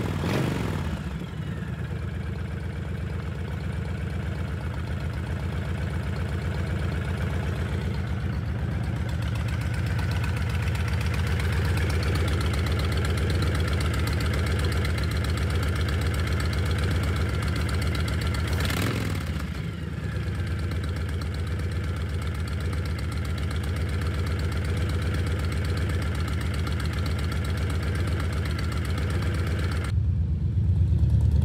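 Honda VTX1300 V-twin engine idling steadily after its carburetor cleaning and vacuum-leak repair. Its pitch drops back right at the start, and its speed dips briefly and recovers about two-thirds of the way through.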